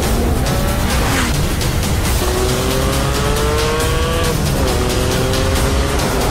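Porsche 718 Cayman GT4's naturally aspirated flat-six engine revving. Its pitch rises steadily through a gear, drops at a shift about four and a half seconds in, then climbs again, over background music.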